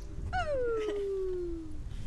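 An animal whining: one strong call that drops sharply and then slides slowly down in pitch for about a second and a half, over a low rumble.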